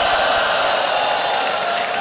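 A person's long, high-pitched held cry, kept on one steady pitch, over the noise of a cheering crowd.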